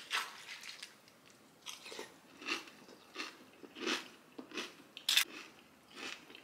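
A person chewing a mouthful of cornflakes with banana, regular crunches about one and a half a second, with one sharper, louder crunch near the end.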